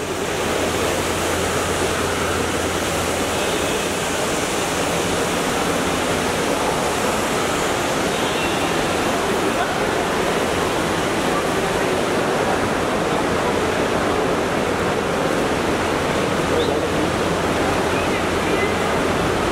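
Steady, loud rushing background noise of a busy airport terminal hall, even throughout, with faint voices in it.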